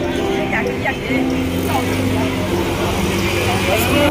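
Busy street traffic: scooter and car engines running steadily close by, with people's voices mixed in.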